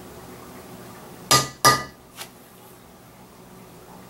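A metal mallet striking a steel leather stamping tool, pressing a border pattern into dampened leather backed by a solid granite slab: two sharp, ringing strikes about a third of a second apart, then a lighter tap.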